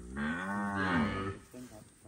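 A cow mooing once: a single call of about a second whose pitch rises and then falls.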